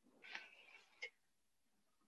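Near silence: a faint, brief high sound about a third of a second in and a faint click about a second in.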